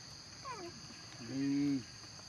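A short high call sliding down in pitch, then a man's low, held voiced sound lasting about half a second, over a steady high drone of insects.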